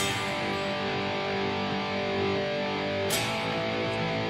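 Electric guitar chord ringing out, the big G chord of a chorus progression, with another strum about three seconds in.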